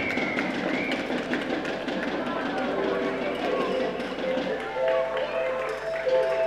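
Outdoor sports-ground noise with voices. Music with held notes comes in about halfway through and grows louder.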